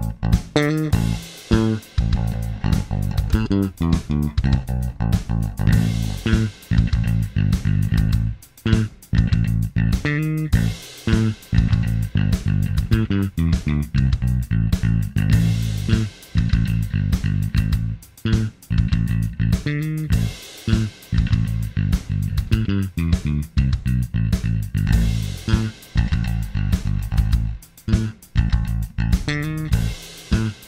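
Electric bass guitar played with the fingers through a Line 6 Helix, riffing in phrases with short breaks over a steady programmed drum beat. Partway through, the tone changes from the bass's active electronics played straight in to its passive pickups through the Helix's ZeroAmp Bass DI preamp model.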